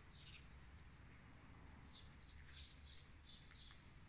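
Faint chirps of small birds: a few short falling notes near the start and a quick run of them from about two to three and a half seconds in, over a low steady rumble.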